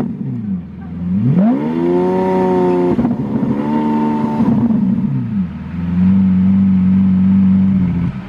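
Lamborghini Aventador's V12 revved while standing still. The revs fall away, climb steeply about a second in and are held high for about three seconds with a brief dip, then drop back about five seconds in to a steady idle.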